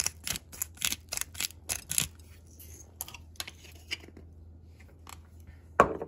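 Hand-twisted salt grinder clicking as it grinds, about four clicks a second at first, then slowing to a few scattered clicks. A single louder knock comes near the end.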